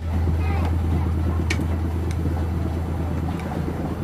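A steady low hum with faint voices behind it, and a couple of brief clicks.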